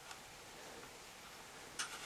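Faint steady outdoor hiss with two short sharp clicks, a light one just after the start and a louder one near the end.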